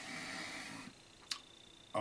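A man's soft breathy exhale with a faint trace of voice, then a single sharp click about a second later.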